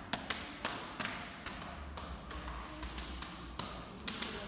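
A pen tapping on a plastic water bottle in an irregular rhythm of sharp clicks, about two or three a second.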